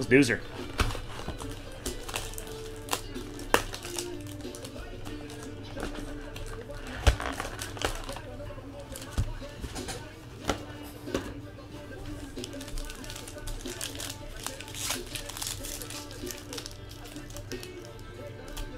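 Foil trading-card packs crinkling and crackling as they are handled and torn open, in many sharp, scattered crackles, over background speech and music from a television.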